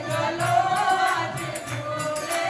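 A group of women singing a Hindi devotional bhajan in chorus, clapping their hands in time to a steady beat.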